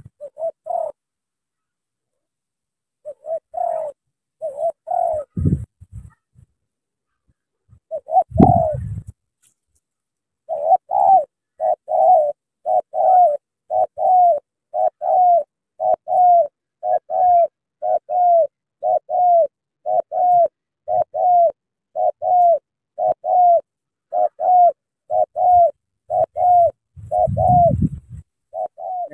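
Spotted dove cooing: a few scattered coos, then a steady run of short coos about one and a half a second through the second half. Dull low thumps come twice in the first third and again near the end.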